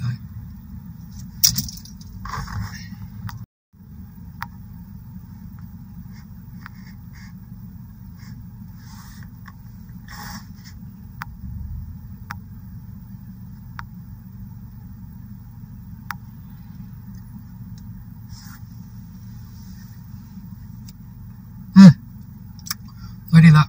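Low, steady rumble of a car idling, heard from inside the cabin while it sits stopped in traffic, with a few faint clicks and small knocks. The sound briefly cuts out about three and a half seconds in.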